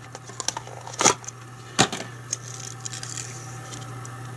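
Plastic fishing-line spool cases and packaging being handled: a scatter of small clicks and light rustling, with two louder clicks about a second apart near the middle, over a steady low hum.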